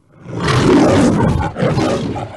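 The MGM studio logo's lion roar: a lion roaring loudly, one long roar and then a second, shorter one starting about one and a half seconds in.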